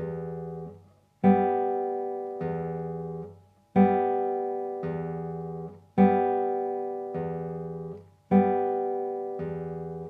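Nylon-string classical guitar played slowly on open strings: fingers pluck the open G and B strings together while the thumb plays an open bass string, each note ringing and fading. This is a right-hand exercise with prepared (planted) fingers. It repeats four times, each time a louder stroke followed about a second later by a softer one.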